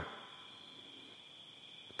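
Faint, steady, high-pitched chirring of insects.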